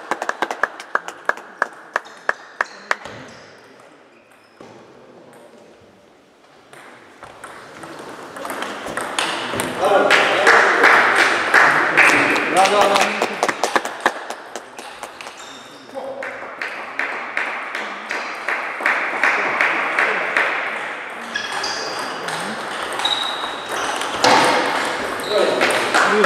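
Table tennis balls clicking off bats and tables, with a fading run of rally hits in the first three seconds and scattered clicks from play throughout. People's voices talk loudly over the clicks in the middle of the stretch.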